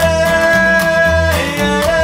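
Live acoustic trio music: fiddle, acoustic guitar and upright bass playing together, with a long note held through the first second and a half before the melody moves on.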